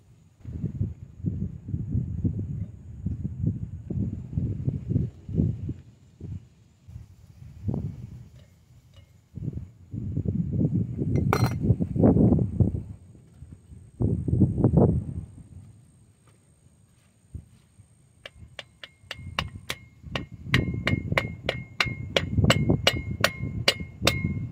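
Hammer tapping a driver to seat a new wheel-bearing race into the bore of a Ford E250 front hub, steel on steel. In the last few seconds it becomes a quick, even run of taps, about three or four a second, each with a short ringing tone.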